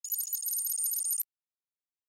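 A high-pitched electronic ringing, like a telephone ring, lasting just over a second with a fast flutter and cutting off suddenly: an added sound effect, not sound from the pitch.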